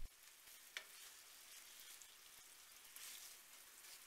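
Faint sizzling of tofu slices in a frying pan as the soy-sauce braising liquid cooks almost dry, with a single light click about three-quarters of a second in.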